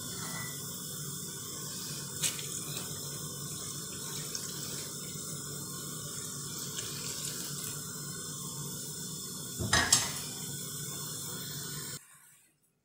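Liquid running steadily, like a stream of water poured into a bowl of flour for dough. There is a short sharp knock about two seconds in and a louder clunk near ten seconds.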